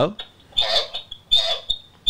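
A man's voice relayed through a Toucan security light camera's small two-way-talk speaker: short, thin, tinny bits of speech, with a steady high tone running through them.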